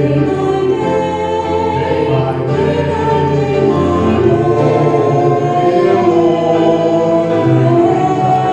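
A man and a woman singing a duet into handheld microphones, amplified through a PA, over sustained low musical accompaniment.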